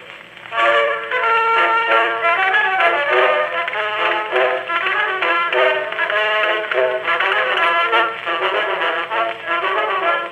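Instrumental introduction of a 1905 Edison Gold Moulded wax cylinder, played acoustically through an Edison Home phonograph's horn, starting about half a second in. The sound is thin, with no deep bass and no high treble.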